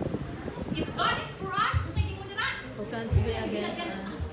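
Voices speaking in a hall, with several high, rising voices about a second in and again a little later.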